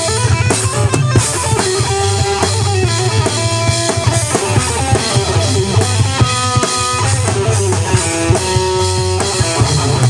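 Metal band playing live: electric guitar riffing over a drum kit with a busy kick drum, an instrumental passage with no vocals. Guitar notes are held briefly about six seconds in and again near the end.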